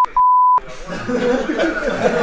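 Two short censor bleeps, each a single steady beep that blanks out all other sound, in the first half second. Men's voices laughing and talking follow.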